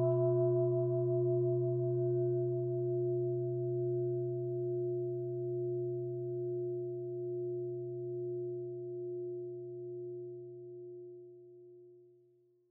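A meditation singing bowl ringing out: a low steady hum with several higher overtones, wavering gently in loudness as it slowly fades, dying away near the end.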